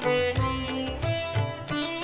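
Instrumental background music led by a plucked string instrument, with bending notes over a low, regular beat.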